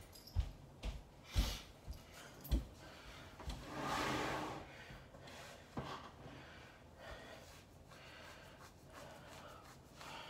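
Several dull thumps as a leather couch is shifted, then about four seconds in a longer rubbing squeak: skin on the back of a leg dragging against the leather, a noise that could be mistaken for a fart.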